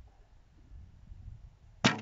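A heavy traditional bow of over 100 lb draw weight shot once near the end: a sharp crack as the string is released, then a brief low hum as the string and limbs settle. Before the shot there is only a faint low rumble.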